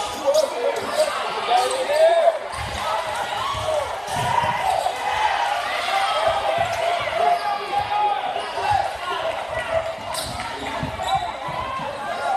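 Basketball game sounds in a gymnasium: a basketball bouncing on the hardwood floor in short knocks, over a steady layer of spectators' and players' voices and shouts.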